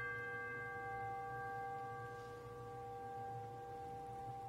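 A struck bell ringing on after a single stroke, a clear tone with several overtones slowly fading; it is tolled once for each name of the departed read aloud.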